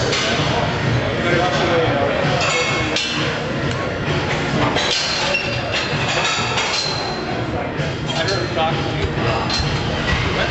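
Metal gym equipment clinking several times with short ringing strikes, over steady background music and people talking.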